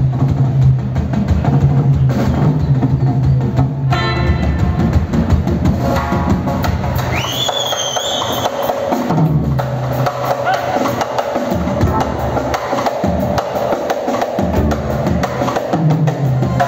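Live percussion-led band music: a drum kit, a hand drum and doira frame drums play a fast, busy rhythm over a bass line. About halfway through, a high tone glides up and holds for a second or so.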